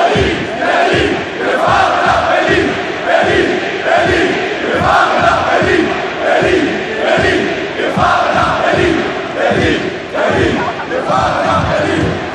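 Football supporters in a stadium stand chanting in unison at close range, a short phrase repeated over and over to a steady beat.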